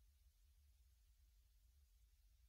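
Near silence: only a faint steady low hum and hiss.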